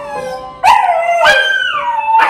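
Siberian husky howling along to an upright piano: a loud howl starts suddenly about half a second in, then rises to a higher, held note that falls away near the end, over a lingering piano note.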